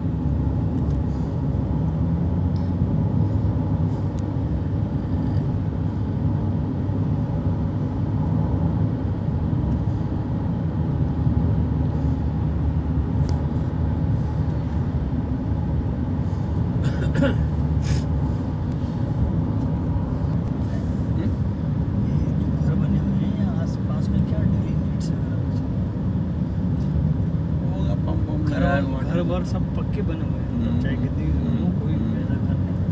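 Steady low rumble of a car's engine and tyres heard from inside the cabin while driving, with a couple of faint clicks about two-thirds of the way through.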